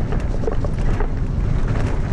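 Wind buffeting the microphone of a camera riding on a mountain bike descending dirt singletrack at speed, a steady low rumble with tyre noise on the dirt and scattered small clicks and rattles from the bike.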